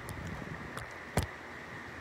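Steady background hiss with a single sharp knock a little past the middle, and a few faint ticks before it.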